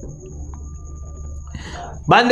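A pause in a man's speech: a steady low electrical hum with a faint thin high whine, and a short soft breath near the end.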